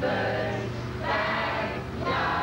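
A group of people singing together in a sing-along, holding long notes.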